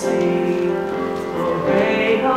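A stage cast singing together in held notes, moving to a new chord near the end.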